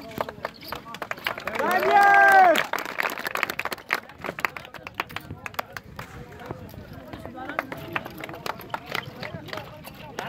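Outdoor crowd voices, with one loud drawn-out yell about two seconds in, the loudest sound. Many sharp clicks and taps are scattered throughout.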